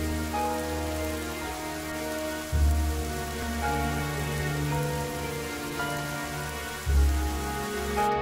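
Rain sound effect over dark, droning intro music of long held notes with a heavy low bass; a deeper, louder bass swell comes in about two and a half seconds in and again near the end.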